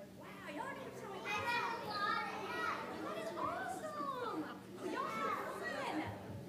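Young children chattering and calling out, several high voices overlapping, with the hall's reverberation behind them.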